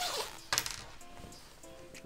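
A fabric duffel bag being unzipped and handled: a short zipper rasp at the start, then a sharp clink of its hardware about half a second in, followed by quieter rustling.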